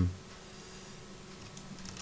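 Faint clicking of a computer mouse and keyboard, a few light ticks near the end, over a low steady hum.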